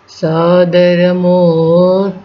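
A solo voice singing long, held notes of a slow devotional song, coming in about a quarter second after a short pause.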